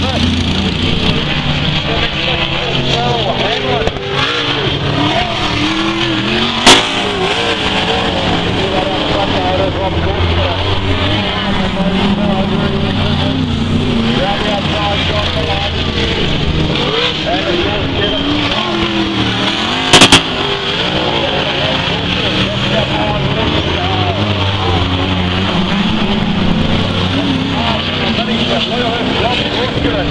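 Several sprint car V8 engines running on a dirt oval, their pitch rising and falling as the cars accelerate and back off around the turns. Two sharp cracks stand out above the engines, one about seven seconds in and another about twenty seconds in.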